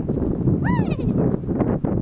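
Nova Scotia duck tolling retriever giving one short, high-pitched excited cry that rises and falls, a little under a second in, over wind rumbling on the microphone.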